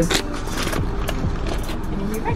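Short clicks and rustles from things being handled inside a car, over the low rumble of the idling car.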